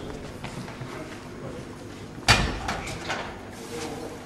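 A loaded barbell set back onto the hooks of a squat stand: one loud metal clank about two seconds in, dying away quickly, over low hall noise.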